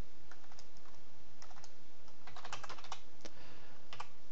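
Typing on a computer keyboard: scattered keystrokes with quick runs of several keys about one and a half and two and a half seconds in, with short pauses between.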